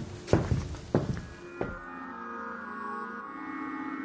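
Footsteps on a wooden parquet floor, a step about every two-thirds of a second, stopping about a second and a half in. Soft ambient music with long held tones then takes over.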